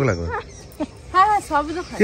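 A small dog whimpering: two short, high whines about a second in.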